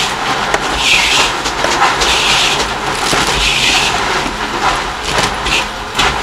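Thin plastic bags crinkling and rustling in irregular short bursts as red sugar candies are packed into them by hand, over a steady low background hum.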